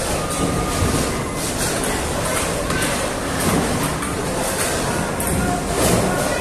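A table tennis rally: scattered light clicks of the ball on the paddles and table over a steady, loud noisy rumble of the hall.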